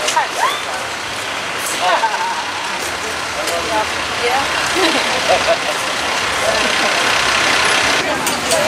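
Road traffic noise from a passing motor vehicle, building over the second half and loudest near the end, with scattered snatches of passers-by's voices.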